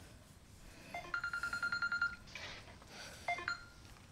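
A rapid run of about a dozen short high beeps lasting about a second, then a brief second burst of beeps near the end.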